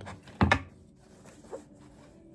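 A brief swish of cloth about half a second in as a fabric dust bag is handled and pulled open, followed by faint rustling and a small click.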